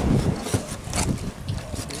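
Wind buffeting the microphone on an open boat deck, with a couple of short scrapes from a fillet knife working a halibut on the cleaning table.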